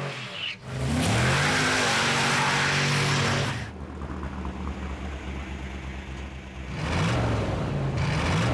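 V8 car engine revving hard, rising in pitch, loud with a rushing noise for about three seconds from a second in. It then runs lower and steadier before revving up again near the end.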